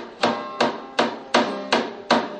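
Acoustic guitar strummed in hard, even chords, about five strums in two seconds, each chord ringing briefly before the next.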